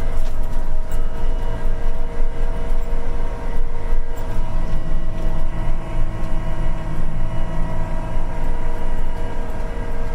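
Apache self-propelled crop sprayer driving through a field while spraying, heard inside the cab: a steady machine drone with a low rumble and several held tones.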